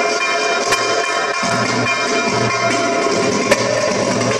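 Darbuka (doumbek) drum solo played live: a dense run of sharp, rapid strokes broken by deep, ringing bass strokes every second or so.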